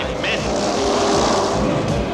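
Cartoon vehicle engine sound effect running steadily, mixed with the background music score.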